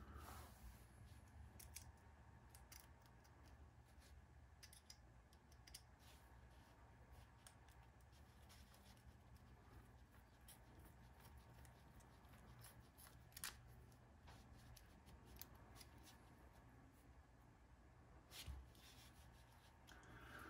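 Near silence with faint, scattered small clicks and ticks of tiny hardware being handled: a lock nut being run onto a screw in a small RC truck steering part with a hand nut driver. Two slightly louder clicks come about two-thirds of the way in and near the end.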